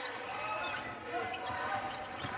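Game sound from a basketball court: a ball being dribbled on the hardwood over the murmur of the arena crowd.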